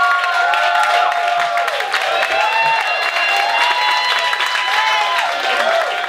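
Audience applauding and cheering, with many voices whooping and calling out over steady clapping.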